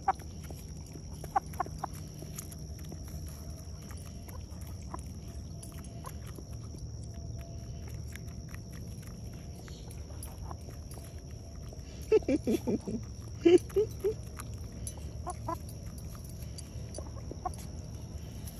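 Hens pecking feed from a person's open palm, with scattered light pecks. A short run of clucking comes about twelve seconds in.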